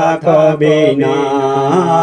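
Male voice singing a Bengali Islamic gajal, drawing out a long wavering note over a steady low backing drone.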